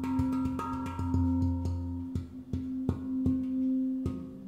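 Svaraa steel handpan tuned to a Low F2 Pygmy scale (12 notes) played with the fingers: quick taps on the tone fields, several a second, over sustained ringing notes. A deep low note rings under them through the first half and dies away about two seconds in.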